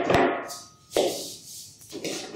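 Wooden spoon knocking against and scraping around a plastic mixing bowl while beating butter and brown sugar together: a sharp knock at the start, then a few scraping strokes about half a second apart.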